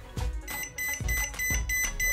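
DEKO 3D green-beam laser level (DKLL12PB1) beeping in a rapid high-pitched series, about four beeps a second, starting about half a second in: its out-of-level alarm, sounding because the unit is tilted beyond the range its pendulum can self-level. A few light knocks from the unit being handled lie underneath.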